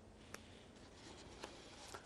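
Near silence: faint background noise with two brief, faint clicks, one about a third of a second in and one about a second and a half in.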